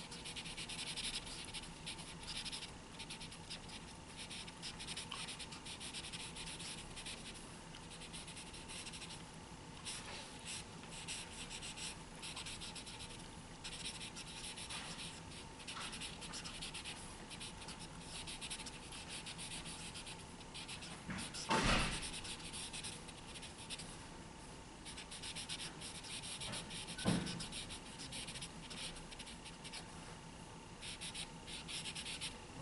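Giant chisel-tip marker scratching across a paper drawing pad in many short, quick strokes as leaf shadows are blocked in. A louder thump comes about two-thirds of the way in, and a short knock near the end.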